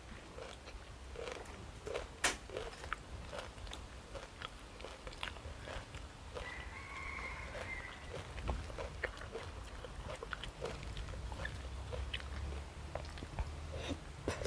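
Close-miked eating: irregular chewing and mouth clicks from crunchy pork sai tan salad, with small clicks of a spoon in the food tray.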